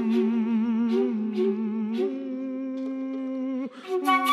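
A woman's voice humming a held "m" with a wavering vibrato, stepping up to a higher note about halfway through and breaking off shortly before the end. Soft short flute notes sound over it.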